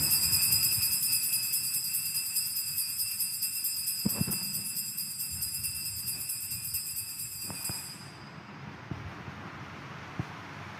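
Altar bells shaken rapidly and continuously at the elevation of the consecrated host, a bright jingling ring that stops about eight seconds in. A soft knock comes about four seconds in.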